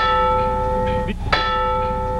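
A bell struck twice, about a second and a half apart, each stroke ringing on with a clear steady tone. It is the trading floor's bell signalling the stop in trading.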